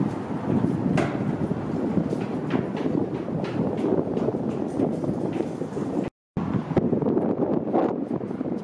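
Steady rumbling noise echoing in a concrete pedestrian tunnel, with scattered sharp footstep taps. The sound drops out briefly about six seconds in, then the rumble goes on.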